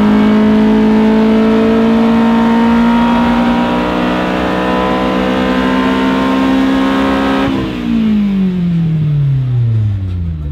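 A car engine at high revs, its pitch climbing slowly and steadily for several seconds. About seven and a half seconds in the throttle comes off and the revs wind down in one long, steady fall.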